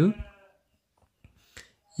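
The drawn-out end of a spoken word, a man's voice rising in pitch, then near silence broken by a few faint clicks.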